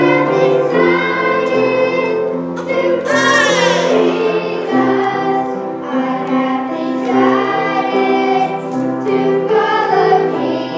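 A youth group singing together as a choir, in sustained sung lines. About three seconds in, a louder held high note wavers with vibrato.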